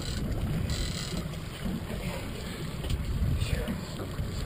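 Steady low rumble aboard a small fishing boat at sea, with wind on the microphone.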